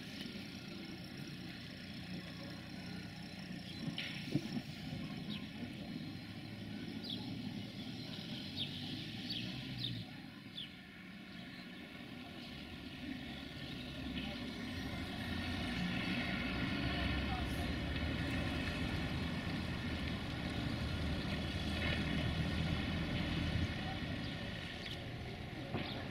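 Diesel train's engine running steadily as it approaches, growing louder over the second half, with a few short sharp ticks in the first half.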